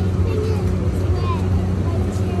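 A steady low machine hum, even in pitch, under faint voices of people nearby.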